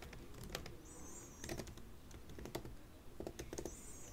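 Faint typing on a computer keyboard: scattered single keystrokes and short runs of keys at an uneven pace.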